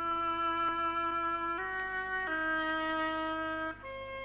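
Slow instrumental music on a wind instrument playing long held notes: the note steps up about one and a half seconds in, drops lower a moment later, and a higher note begins near the end.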